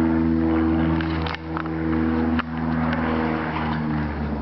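An engine idling steadily, holding one even low pitch throughout, with a few short clicks over it.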